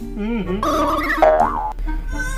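Cartoon-style comedy sound effect with a wobbling, bending pitch that rises and falls about one and a half seconds in, laid over a reaction shot.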